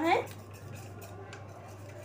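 A metal spoon stirring custard powder into milk in a small steel bowl, with faint scrapes and light clicks against the bowl's side.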